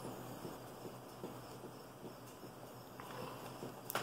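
Faint sipping and swallowing of beer from a glass mug: small irregular clicks, with one sharper tick about three seconds in.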